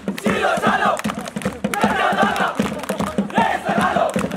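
A group of male voices shouting and chanting together in short, repeated phrases over a steady drumbeat.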